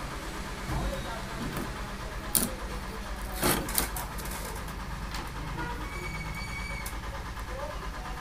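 Small metal parts of an electric iron's thermostat and element assembly being handled by hand: a sharp click about two and a half seconds in and a short run of clinks about a second later, over a steady low background hum.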